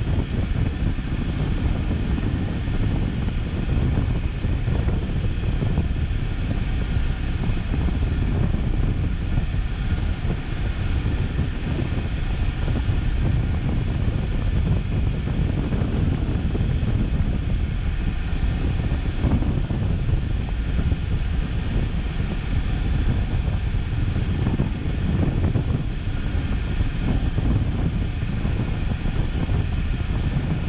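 Steady low rumble of a car sitting stationary at idle, with other vehicles passing through the intersection ahead from time to time.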